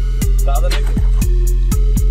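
Background hip-hop music with a heavy bass line and a kick drum about twice a second.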